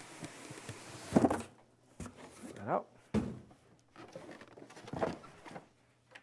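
Cardboard shipping carton sliding up off the inner box, cardboard rubbing on cardboard, with the rubbing stopping about a second and a half in. A few cardboard knocks and bumps follow as the carton is handled.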